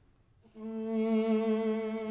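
After a brief near-silence, a single long bowed string note starts about half a second in and is held steadily with a light vibrato: the opening of a string quartet piece.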